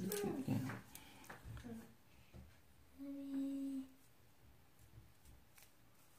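A woman humming one short, steady closed-mouth note lasting under a second, about three seconds in. A brief, louder voice-like sound comes at the very start.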